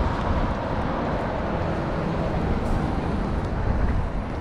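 Articulated city bus driving past on the road, a steady run of engine and tyre noise.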